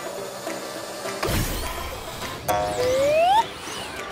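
Cartoon washing-machine sound effects over faint background music: a whirring rumble starts about a second in, then a sharp click and a smooth rising whistle-like tone near the end, as the machine's door swings open.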